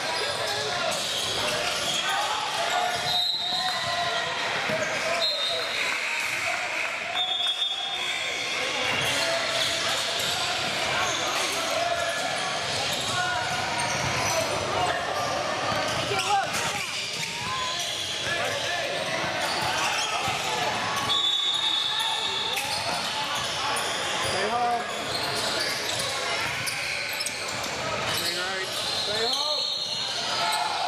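Basketball game sound on a hardwood gym court: a basketball bouncing, several short high sneaker squeaks, and players' and onlookers' voices calling out, echoing in the large hall.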